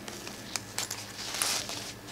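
Light handling noise from a nylon Pacsafe Daysafe crossbody bag: scattered small clicks from its metal zipper pull and anti-theft hook, with a short fabric rustle in the middle, as the pull is worked onto the hook.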